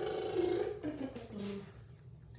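A young woman's voice making a drawn-out wordless sound, stepping up and then down through a few pitches and fading out about a second and a half in.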